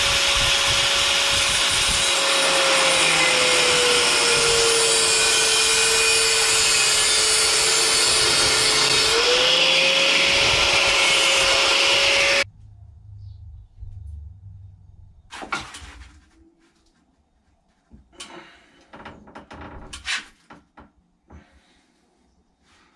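Angle grinder with a cutting disc cutting through a 20 mm metal tube. It runs loud and steady for about twelve seconds, its whine sagging in pitch as the disc bites under load and rising back about three quarters of the way through, then cuts off suddenly. A few quieter knocks of the metal tube being handled follow.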